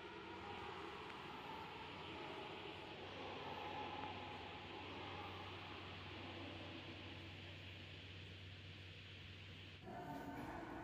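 Faint room tone of a large marble hall: a soft steady hiss with a low steady hum underneath.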